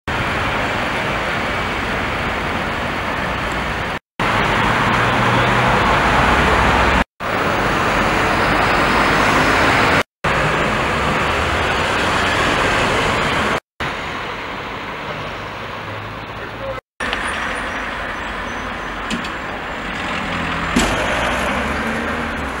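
Outdoor street ambience dominated by steady road-traffic noise, in several short takes separated by abrupt cuts to silence; a couple of faint clicks near the end.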